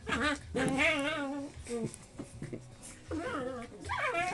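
English Springer Spaniel puppies vocalising while play-fighting: short whining growls and one long, wavering whine about a second in.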